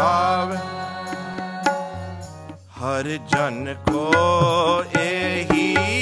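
Sikh kirtan: a male voice singing a shabad over a steady harmonium, with tabla strokes marking the rhythm. The singing breaks off briefly about halfway through, then resumes.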